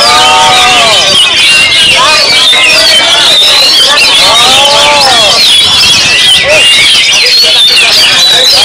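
Many caged songbirds, the contest's Oriental magpie-robins among them, singing at once in a dense unbroken tangle of chirps and trills. People's long drawn-out calls rise and fall over the birdsong several times.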